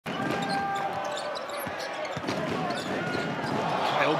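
Basketball being dribbled on a hardwood court, with short sneaker squeaks over the steady noise of an arena crowd.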